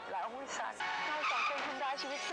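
Dialogue from a Thai TV drama clip over background music, with a short noisy, screech-like sound about halfway through.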